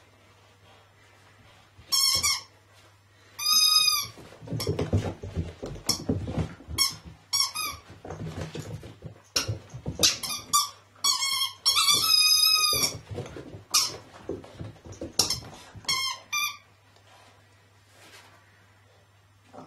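Squeaky toy on a flirt pole squeaking in short, high squeaks, over a dozen times at irregular intervals, as a puppy grabs and bites it. Scuffling and soft thuds on carpet come between the squeaks.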